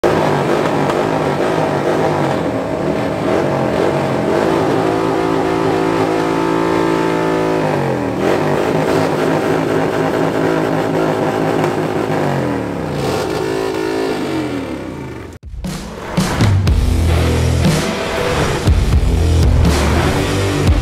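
A motorcycle engine revving, held high and then falling and rising in pitch several times. At about fifteen seconds it cuts off abruptly, and music with a heavy bass beat takes over.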